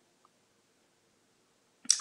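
Near silence: a pause in a woman's talk, with her speech starting again near the end.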